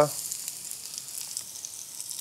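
Food sizzling steadily in a pan on the stove: an even, high hiss.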